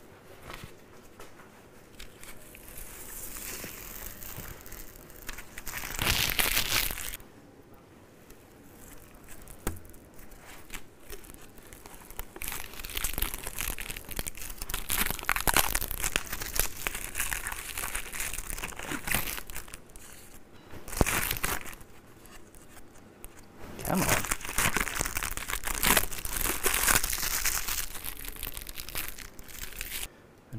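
Protective plastic film being peeled off clear acrylic guitar body pieces and crumpled up, a crackly rustle and tearing that comes in repeated bursts, the loudest about six seconds in and through the second half.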